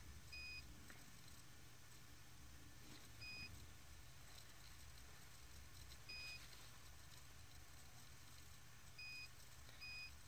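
Faint, short, high-pitched electronic beep repeating about every three seconds, five beeps in all, the last two close together near the end, over a low steady hum.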